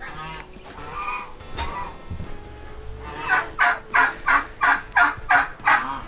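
Domestic geese honking: a few spaced honks, then a fast, even run of about nine honks, roughly three a second, through the second half.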